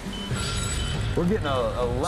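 Portable gas detector alarm sounding short high beeps, about one and a half a second, over a low rumble. The beeping is the lower-explosive-limit alarm, warning of explosive chemical fumes in the sewer.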